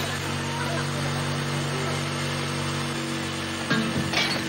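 Electric drill running steadily as its long bit bores through a plaster wall. The drill stops abruptly with a knock near the end.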